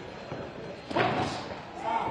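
A single sharp thud about a second in, a boxing glove punch landing, followed right after by a man's short shout from ringside.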